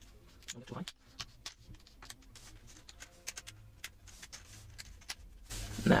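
Plastic screen bezel of a Lenovo Ideapad 320S laptop being prised off by fingernail, giving a string of small, irregular clicks as its clips let go.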